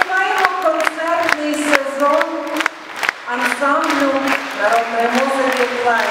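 A woman singing a Ukrainian folk song into a microphone, in long held notes with vibrato, over sharp claps in a steady beat about two a second.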